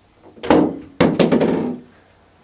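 A heavy thump about half a second in, then a quick run of five or six loud knocks starting about a second in.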